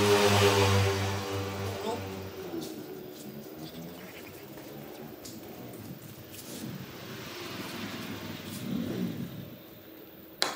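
A motor vehicle engine running with a steady low hum, loudest in the first two seconds and then fading away.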